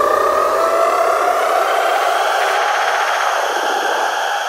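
Electronic trance build-up with the kick drum and bass dropped out: a synth riser gliding slowly upward over a swelling wash of noise.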